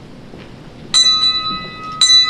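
A small high-pitched bell struck once about a second in, ringing and slowly fading, then struck again right at the end. Before the first strike there is only a faint steady room hiss.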